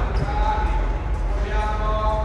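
A single dull thud of feet landing on a rubber gym floor from a box jump, about a fifth of a second in. Under it runs a steady low rumble, with a voice in the background.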